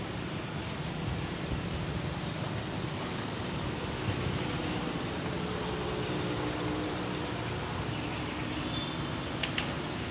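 A high, steady insect buzz over a low outdoor rumble, with a faint low hum joining about four seconds in.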